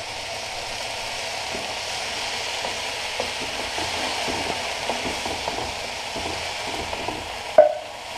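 Crushed tomatoes sizzling steadily in a hot wok with onions, garlic and chilli, a wooden spoon stirring and scraping through the sauce. A single short clunk near the end.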